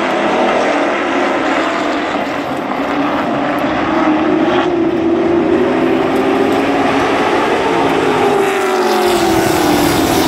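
A pack of full-bodied stock cars running laps on a short oval track, their engines loud and continuous. The pitch climbs as the cars come round toward the grandstand, then drops as they pass close by near the end.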